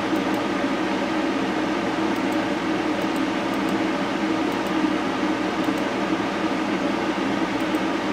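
Steady whirring hum of a fan-driven machine, such as a room fan or air conditioner, running in a small room. It holds even and unchanging throughout.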